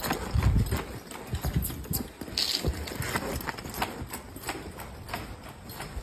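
Hoofbeats of a ridden horse loping on the soft dirt footing of an arena, a run of uneven thuds and clicks, with a burst of low rumble about half a second in.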